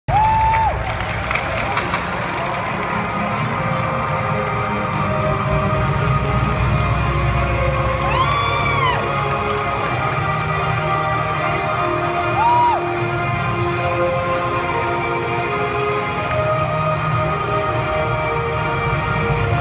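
Basketball arena crowd noise with music playing over the arena's sound system. A few short high tones rise above it: one at the very start, one about halfway through and one a little later.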